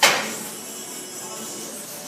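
A single sharp metallic clank of gym weight equipment right at the start, ringing briefly before dying away.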